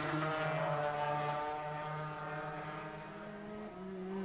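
Two-stroke 250cc Grand Prix racing motorcycle engines running at high revs through a corner, a steady engine note that fades a little, dips briefly about a second and a half in and steps up in pitch near the end.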